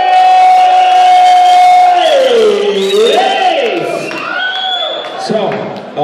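A voice over a club sound system, loud and amplified, holding one long high note for about two seconds, then sliding down and swooping up and down in pitch.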